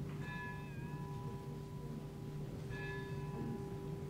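Opera orchestra playing a quiet passage: a low chord held steady while a higher note enters twice, about two and a half seconds apart, the first one dipping slightly in pitch.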